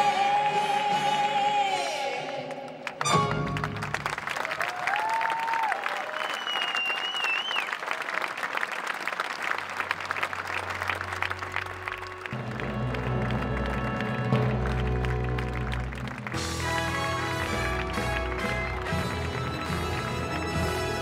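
A singer holds a final note over the band, cut off about three seconds in. Then a large audience applauds and cheers. Closing music with a low bass beat comes in under the applause past the halfway mark and takes over fully near the end.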